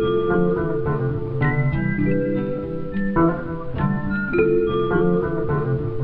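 Instrumental beat-tape music: plucked guitar notes and chords over a steady beat.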